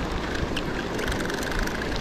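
Spinning reel cranked fast to take up slack line after a fish has picked up the bait, a steady whir with fine rapid ticking over surf and wind.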